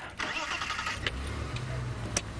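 Open safari vehicle's engine: a short rushing noise, then a low engine rumble that builds about a second in, with a click as the vehicle pulls away.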